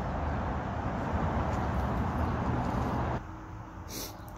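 A steady rushing outdoor background noise that cuts off abruptly about three seconds in.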